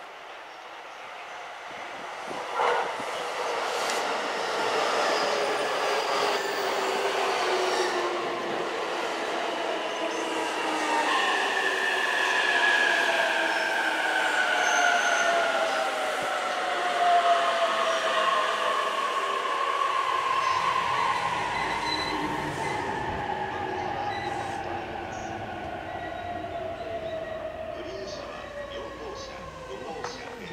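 Electric commuter train coming into a station: the whine of its motors falls slowly and steadily in pitch as it brakes, over the running noise of wheels on rail. There is a short knock a few seconds in and another about two-thirds of the way through.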